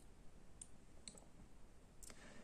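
Near silence with a few faint, short clicks spread through the first second and a half.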